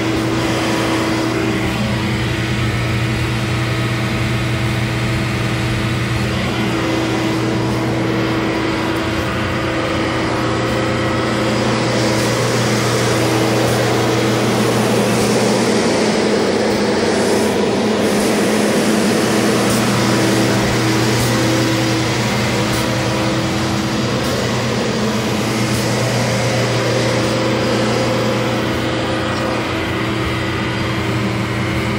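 Engine of a tracked heavy-equipment machine running steadily under way, with a steady low hum; it grows louder and rougher for several seconds in the middle, then settles back.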